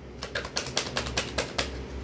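Rapid, irregular sharp clicking, about eight clicks a second, starting a moment in, over a low steady hum.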